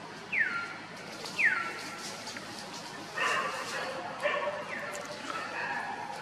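Infant macaque crying: two short squeals that fall in pitch near the start, then a run of longer cries in quick succession from about halfway through.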